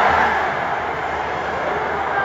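Football stadium crowd: a din of many voices, loudest at the start and then holding steady.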